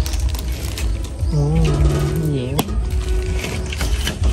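A person's voice making one drawn-out sound, over a steady low rumble, with a sharp click about two and a half seconds in.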